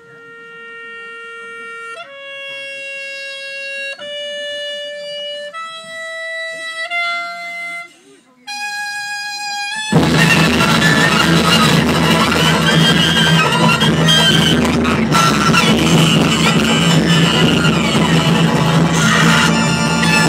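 Live acoustic band music: for the first ten seconds a lone reed instrument plays slow held notes that climb step by step, then at about ten seconds the full band comes in much louder, with double bass, accordion and guitar.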